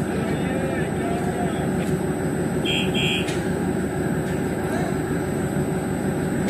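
DEMU diesel power car engine idling steadily, a constant rumbling drone with a low hum. Two short, high electronic beeps sound close together near the middle.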